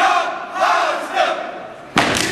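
Step team shouting a chant together in short, loud phrases, ending with a sharp stomp as the stepping begins.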